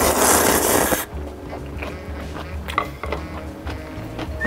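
A loud slurp of saucy instant noodles (spicy jjajang ramyeon) lasting about a second, followed by quieter chewing over background music.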